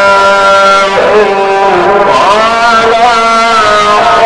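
A man's voice chanting in long, ornamented notes. It holds a note for about a second, slides down and back up in pitch, then holds another long note.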